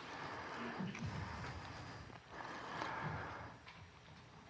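Bible pages being turned by the congregation, a soft rustle of paper that swells twice and fades near the end.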